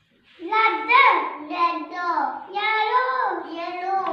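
A young child singing in a high voice, in about three drawn-out phrases with sliding pitch, starting about half a second in.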